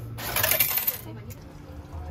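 Coins clattering into the change tray of a restaurant meal-ticket vending machine, one bright burst lasting just under a second.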